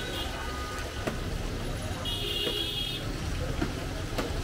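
Street traffic noise with a steady low rumble, and a vehicle horn sounding once for about a second around halfway through; oil sizzling in a wide frying pan under it, with a few light clicks.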